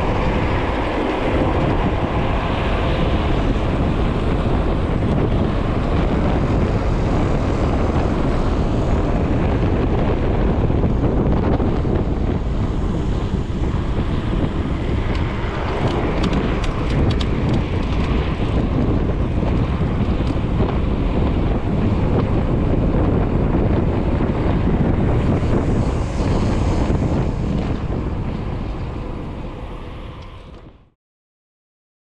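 Wind buffeting the microphone of a camera mounted on a moving bicycle, a loud steady rush of wind noise with road and tyre rumble underneath. It fades out over the last few seconds.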